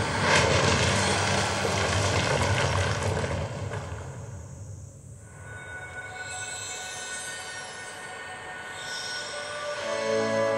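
Projection-mapping show soundtrack: a loud, dense rumbling sound effect with a low hum that fades out about four to five seconds in, followed by quiet sustained tones.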